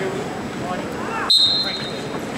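A referee's whistle blown once, a short, steady, shrill note about a second and a quarter in, over the babble of voices and shouts in a crowded gym.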